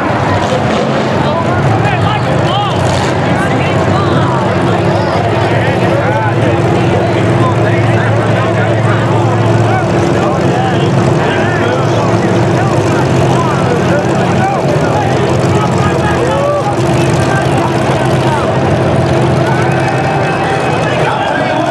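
Demolition derby car engines running steadily, with crowd voices and shouts over them.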